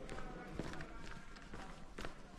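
Footsteps of a person walking briskly along a mine tunnel floor, with indistinct voices in the background.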